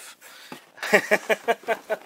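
A woman laughing: a quick run of short voiced "ha" pulses, about six a second, starting about a second in.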